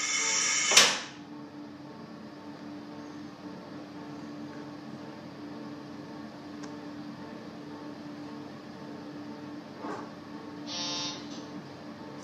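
Inside the cab of a stopped JR Hokkaido 711 series electric train: a hiss of air ends with a sharp knock just under a second in, leaving the train's steady low hum with a single low tone. A brief click comes near ten seconds, followed by a short buzz.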